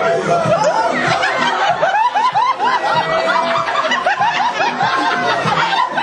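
Several people laughing and giggling together in quick, overlapping bursts, with music playing underneath.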